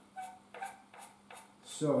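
Pool balls knocking together on the table: about four light clacks, each with a brief ring, spaced under half a second apart.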